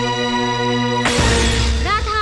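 Film background music holding a steady sustained chord, cut off about a second in by a sudden loud crash that rings on noisily for about a second.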